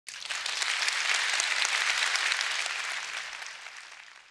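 Audience applauding, starting abruptly and dying away over the last second.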